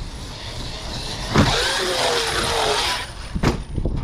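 Traxxas X-Maxx 8S electric RC monster truck's brushless motor whining under throttle, with tyre noise, starting suddenly about a second in and lasting roughly two seconds, followed by a sharp knock near the end as the truck lands.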